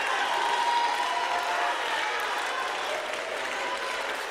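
Church congregation applauding, with a few voices calling out early on; the clapping eases off slightly toward the end.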